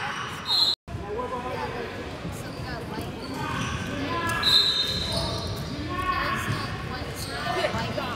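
A basketball being dribbled on a gym's wooden court during play, with spectators talking in the background.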